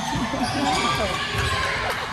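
Balls bouncing on a gym floor amid overlapping voices of children and adults, echoing in the large hall.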